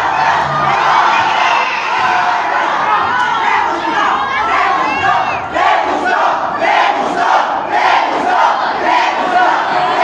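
Lucha libre crowd shouting and cheering, many voices overlapping, with short, rising and falling shouted calls.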